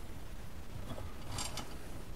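Small handling sounds of parts and a thread-locker tube on a workbench: a faint click about a second in, then a short scrape, over a steady low background hum.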